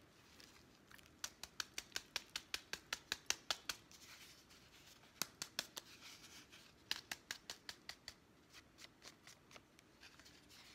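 Thin black plastic nursery pot squeezed and worked by hand to loosen the root ball: quick sharp plastic clicks, about six a second, in several runs that grow fainter near the end.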